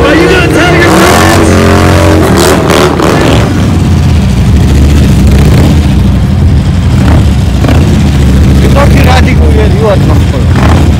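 Loud motorcycle engines running at high revs. First a burnout bike, with a voice over a loudspeaker. Then, after a change about three seconds in, a stunt motorcycle's engine running steadily as it is held in a wheelie.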